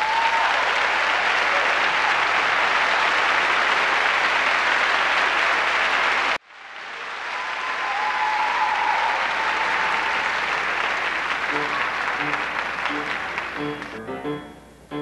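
Auditorium audience applauding, with a couple of brief cheers over it; the applause cuts off abruptly about six seconds in, then returns and slowly fades. Near the end, repeated piano chords begin under the dying applause.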